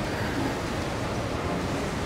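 Steady rushing noise of wind and air movement across the open deck of a large ship at sea, with no distinct events.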